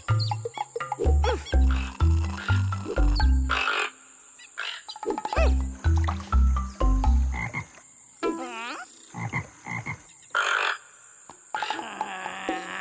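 Cartoon frogs croaking in a rhythmic, tune-like run of deep croaks at stepped pitches, with higher squeaky calls between them. There are two runs, split by a short gap about four seconds in, then sparser high chirps.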